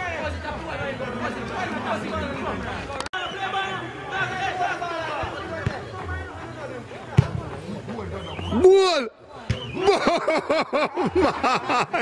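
Several voices talking over one another, with one loud drawn-out call that rises and falls about three-quarters of the way in, followed by a run of quick short syllables.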